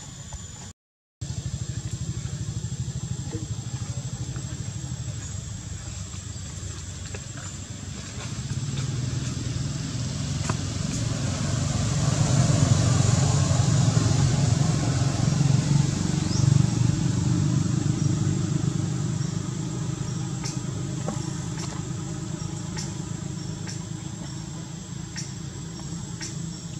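Low, continuous engine hum of a motor vehicle that grows louder toward the middle and eases off again, with a thin steady high-pitched whine over it. The sound cuts out completely for a moment about a second in.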